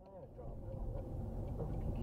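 Car cabin engine and road noise picked up by a dashcam, a low steady rumble that grows louder over the first second.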